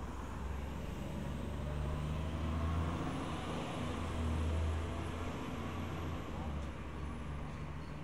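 Street traffic: a motor vehicle's engine rumbling past on the city street, swelling twice, about three and four and a half seconds in.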